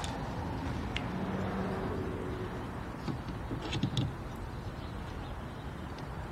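A few light clicks and knocks of a car's rear wiper arm being handled and pressed onto its spindle: one about a second in and a small cluster a little after three seconds. A steady low hum runs underneath.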